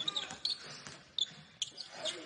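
A basketball being dribbled on a hardwood court: a few sharp, irregular bounces, with short sneaker squeaks in between.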